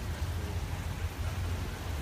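Wind blowing across a phone's microphone: a steady low rumble with a hiss above it.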